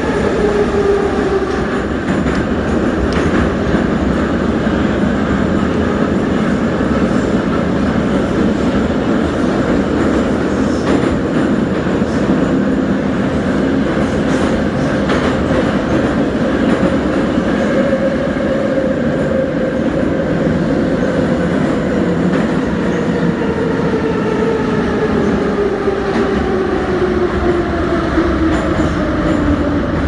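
Metro train running through a tunnel, heard from inside the car: a steady rumble of wheels on rail with a motor whine and faint clicking from the track. Over the second half the whine falls steadily in pitch as the train slows into a station.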